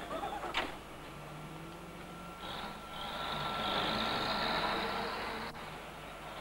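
A box truck driving off: its engine runs with a low hum, then a loud rush of noise swells from about two and a half seconds in and dies away near the end, leaving a cloud of exhaust smoke. A sharp knock comes just before the engine sound.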